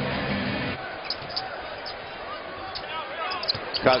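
Live basketball game sound in an arena: steady crowd noise with brief sneaker squeaks on the hardwood court and the ball being dribbled.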